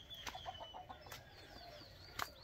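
Faint hens clucking, a quick run of short clucks about a third of a second in, with small birds calling high above them: a thin whistle at the start, then a series of short falling chirps in the second half.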